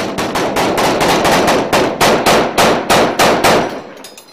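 Rapid gunfire: a fast, fairly regular string of sharp shots, about five or six a second, tailing off near the end.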